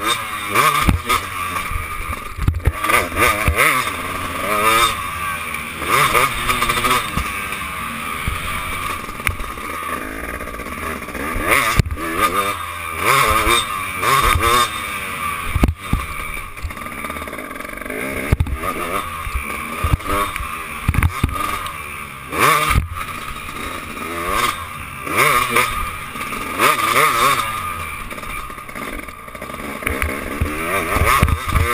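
Motocross bike's engine revving up and down over and over as the throttle is worked and gears are changed through corners and over jumps, heard from a camera mounted on the bike.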